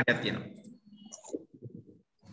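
A voice breaks off, then faint scattered clicks and low rustles follow, with a brief thin high tone about a second in, heard over a video call.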